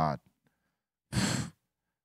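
A man's single short, audible breath, like a sigh, about a second in, between stretches of speech.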